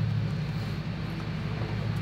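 A steady low hum, an unchanging drone in the background.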